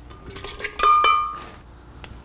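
A metal cup scoop knocking and clinking against a glass blender jar as thick potato soup is tipped in, with one clear ringing clink just under a second in.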